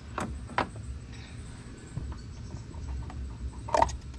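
Handling noise of a paper cartridge oil filter in the hand: a couple of sharp clicks in the first second and a brief louder rustle just before the end, over a steady low rumble.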